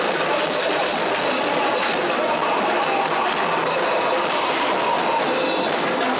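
A live rock band with guitars and bass playing a dense, steady, noisy passage with a faint held note running through it. The recording is thin, with almost no bass.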